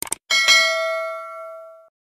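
Subscribe-button sound effect: two quick clicks, then a bright notification-bell ding that rings and fades away over about a second and a half.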